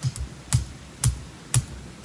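Pulsair compressed-air mixing system firing air pulses into a wine fermentation vat, a sharp pulse about twice a second.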